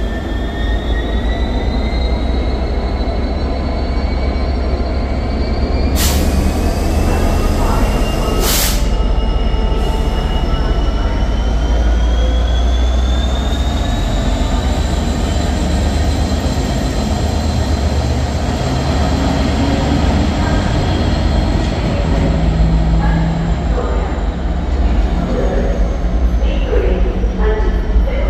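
GB Railfreight Class 66 diesel locomotive, with its EMD two-stroke V12 engine, passing slowly at close range. A deep steady engine rumble runs under a high whine that glides slowly up in pitch and then holds. Two sharp knocks come about six and eight and a half seconds in.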